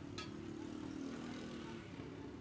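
A steady low engine hum of passing street traffic, with one sharp metal clink just after the start, like a steel ladle against a pot.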